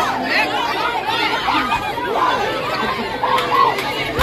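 Dense crowd chatter: many voices talking over one another at once.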